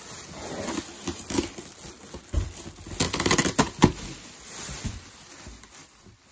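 Clear plastic wrapping crinkling and rustling inside a cardboard box as a foam figure is pulled out of it, with a loud burst of crinkling and sharp snaps about three seconds in.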